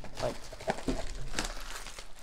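Crinkling and rustling of packaging as a cardboard trading-card blaster box is handled and set down, with a few sharp clicks among it.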